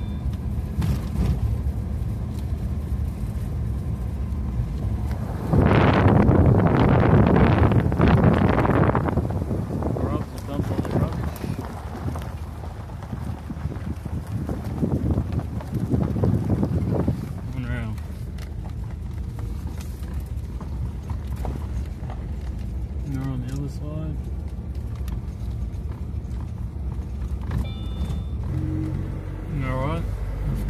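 A car being driven on a rough dirt track: steady engine and road hum, with loud rough rumbling and rattling from about 6 to 9 seconds and again around 15 to 17 seconds, then a smoother, quieter drone.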